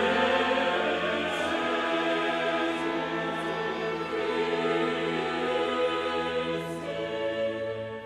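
Choral music, voices holding long sustained chords that slowly fade toward the end.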